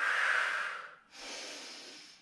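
A woman breathing hard through the microphone during a Pilates curl-up: one loud breath lasting about a second, then a second, fainter breath.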